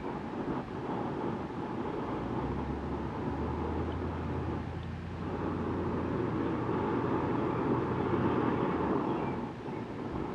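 Breaded pieces sizzling in hot peanut oil in a skillet on a propane burner, the frying starting as they are dropped in and getting louder in the second half. A steady rush of noise, with a low hum in the middle part, runs under it.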